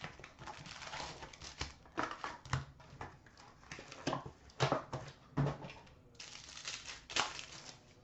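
Plastic shrink-wrap and foil card packs crinkling and rustling as a hockey card box is unwrapped and its packs pulled out, with several sharper crackles and light knocks as packs are set down on a glass counter.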